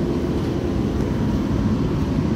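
Steady low rumble of a Eurotunnel shuttle train running through the Channel Tunnel, heard from inside the carriage.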